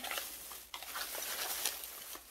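Faint rustling and light clicks of packaging being handled as a carded makeup product is picked up.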